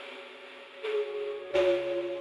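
Chords from a software synth (The Prince plugin's 'hollow window' preset) playing back, with a quiet noise layer that adds a hiss as each chord starts. The chord changes a little under a second in and again at about a second and a half, where a low note joins underneath.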